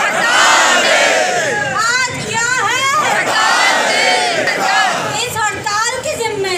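A crowd of protesters shouting slogans together, led by a woman shouting into a handheld microphone.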